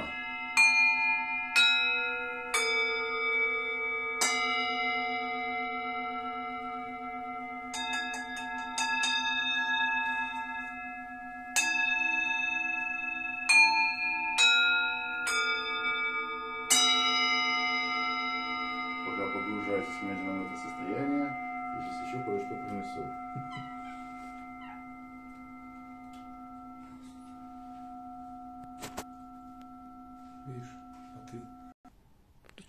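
Several metal singing bowls, some resting on a person's back, struck one after another with a wooden mallet, each strike leaving a long ringing tone that overlaps the others. There are about ten strikes over the first seventeen seconds, then the ringing slowly fades.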